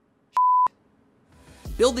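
A single short electronic bleep, one steady pure tone of about a third of a second that starts and stops abruptly, like a censor bleep. Near the end, background music and a narrator's voice come in.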